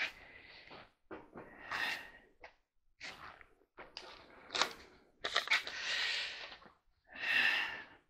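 Handling noise: short, irregular rustles and clicks of small objects being handled, with a sharp click about four and a half seconds in.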